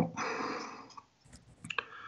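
A soft hiss that fades out within the first second, then a few quick small clicks in the second half, from hands handling a fly at a fly-tying vise.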